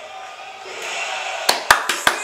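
Arena crowd noise swelling. About one and a half seconds in, a person starts clapping his hands quickly, three sharp claps in a row.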